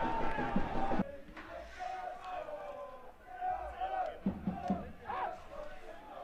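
Small football-ground crowd noise: a crowd reaction to a shot that drops sharply about a second in, then scattered shouts and calls from spectators and players.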